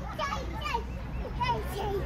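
Young children's high-pitched babbling and short wordless calls during play.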